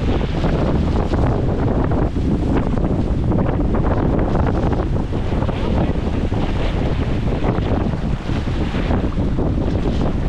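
Strong wind buffeting the microphone, steady throughout, over wind-blown chop and paddle strokes splashing around a surfski.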